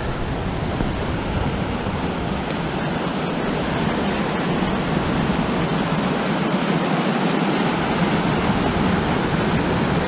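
Fast, glacial-fed creek rushing over boulders: a steady whitewater rush.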